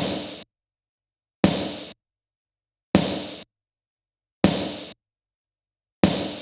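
Recorded snare drum from a mix's drum stem, with some cymbal bleed, played back in isolation. Five sharp hits come about a second and a half apart, each ringing about half a second and then cut off to dead silence.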